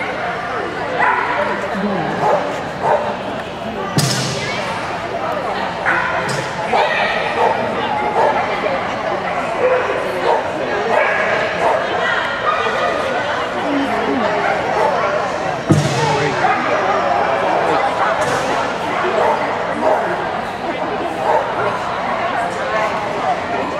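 A dog barking and yipping at intervals as it runs an agility course, over a steady background of echoing voices in a large indoor arena. Two sharp bangs stand out, one about four seconds in and one near the middle.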